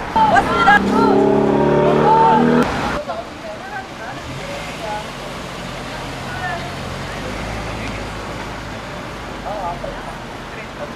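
Street traffic with people's voices. For about the first three seconds, loud calling voices run over a steady droning tone. Then it drops to quieter road noise with a low engine hum and occasional voices.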